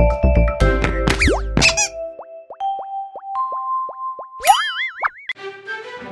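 Cartoon ident jingle for a children's channel: plucked chords over bass with quick upward swoops, then a run of short plops that climb in steps, and a wobbling rising boing about four and a half seconds in, before a new tune starts near the end.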